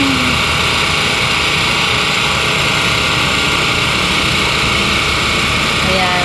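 A vehicle engine running steadily under an even, constant hiss.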